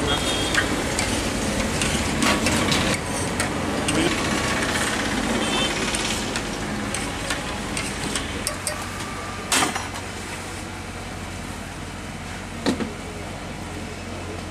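A steel spoon stirring and knocking in a steel pot of oil for fafda dough, with two sharp clinks of metal on metal in the second half. Hot oil sizzles in a large kadhai, over street traffic and voices.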